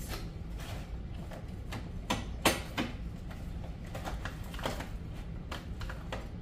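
Light clicks and knocks of kitchen items being handled, a few scattered ones with the sharpest about two and a half seconds in, over a low steady hum.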